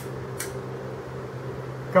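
A steady low mechanical hum, with two light clicks about half a second apart at the start as a pair of Craftsman adjustable oil filter pliers is handled.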